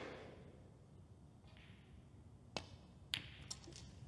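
Snooker cue striking the cue ball with a sharp click about two and a half seconds in, then a louder click about half a second later and a few lighter knocks as the ball travels.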